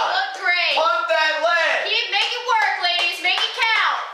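Speech: high-pitched young voices shouting without a break.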